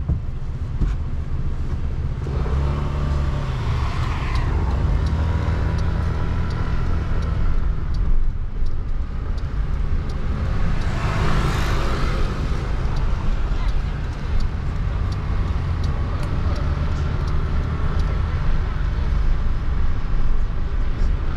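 Steady low road and engine rumble heard from inside a moving car, with two passing swells of tyre and traffic noise, about four seconds in and again near the middle.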